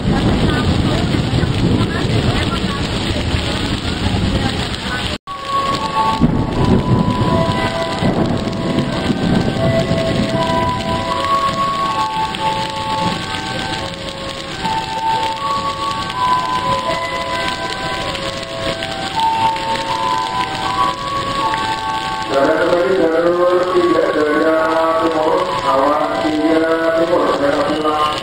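Heavy rain falling steadily, with a container freight train rolling past under it for the first five seconds. After a sudden break the rain goes on under a tune of short, even electronic notes, and near the end a wavering melody of music comes in.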